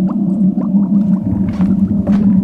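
Low gurgling, bubbling sound over a steady low drone, with many quick little upward chirps.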